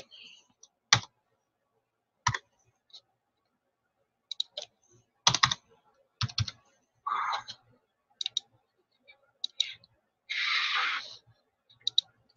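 Computer keyboard keystrokes and clicks, scattered in small groups of a few keys with pauses between, as numbers are typed into address fields. Two short, soft hissing noises, one about seven seconds in and a longer one near the end.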